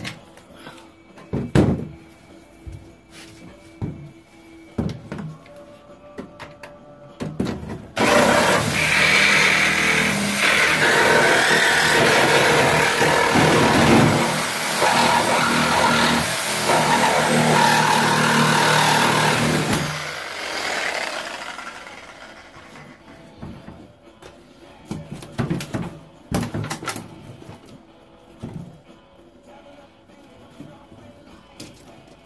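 Reciprocating saw with a metal-cutting blade cutting through the steel floor pan. It starts suddenly about eight seconds in and runs steadily for about twelve seconds before dying away, with scattered knocks of handling before and after.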